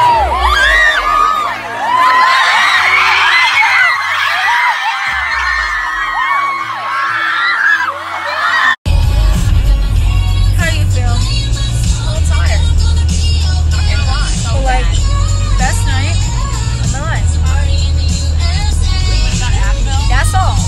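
A concert crowd singing and screaming along to loud live pop music, with a pulsing bass underneath. About nine seconds in it cuts off suddenly and gives way to music with a deep, steady bass and an even beat.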